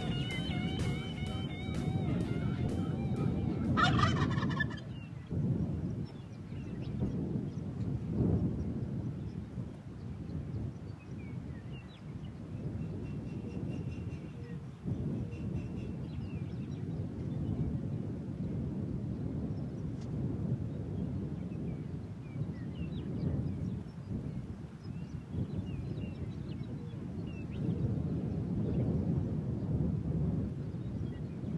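Wild turkey gobbler gobbling once, a short rattling call about four seconds in, over a steady low rumble of wind on the microphone. Guitar music fades out in the first few seconds.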